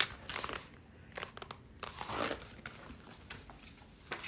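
Soft rustling and crinkling of paper with a few light clicks as a hardcover picture book is handled and a page is turned.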